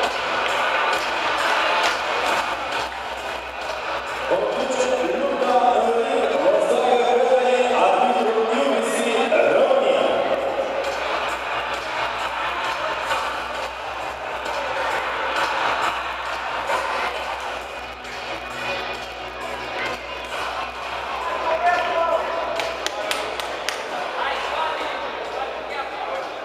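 Indistinct voices echoing in a large sports hall, clearest in the first ten seconds, with scattered light knocks.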